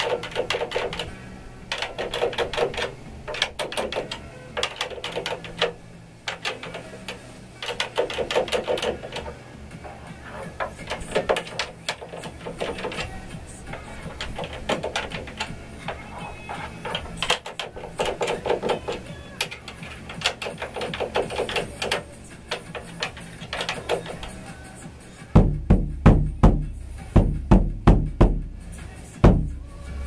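Bursts of rapid light tapping run through most of the sound. Near the end a muffled Tama Imperialstar bass drum is struck about eight times in quick succession, each a short, low hit.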